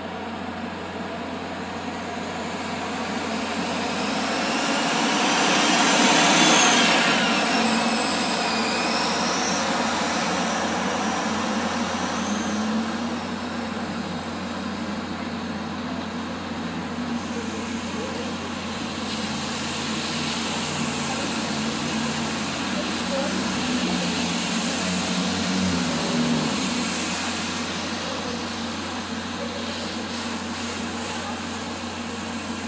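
Megabus coach running as it pulls away: a steady spread of engine and road noise that swells to its loudest about six seconds in, with a faint high whine gliding up and down over the next few seconds.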